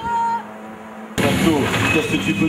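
Rally car engine held at a steady high rev for a moment, then cutting off to a low hum. About a second in, an abrupt switch to loud background noise with voices.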